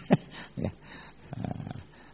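Soft, brief bursts of laughter and breathy chuckling after a joke: a few short, scattered sounds.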